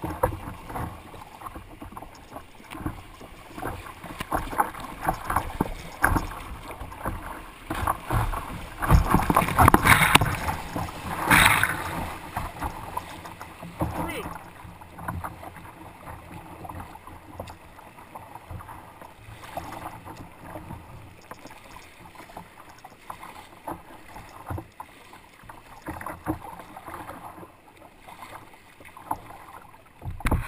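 Fast, high creek water rushing and splashing against a kayak's bow and the camera as it runs a rapid, in uneven surges, loudest for a few seconds from about nine seconds in.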